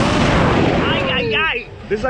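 Wind buffeting the microphone as the reverse-bungee ride capsule flies through the air, a loud rushing roar with heavy low thumping. Just after a second in, a rider's yell slides down in pitch. Near the end the rush briefly drops away.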